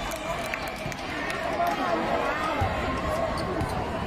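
Basketball game sounds: a crowd of voices chattering throughout, with a basketball bouncing on the court now and then.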